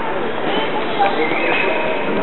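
Crowd of visitors talking in a large hall: a steady hubbub of many overlapping voices, with scattered light clicks.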